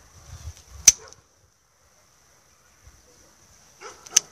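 A single sharp snip of hand pruning shears (secateurs) cutting through a thin young quince shoot, about a second in.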